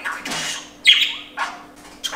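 Pet budgerigar chirping in its cage: short high calls, the loudest a sharp chirp about a second in.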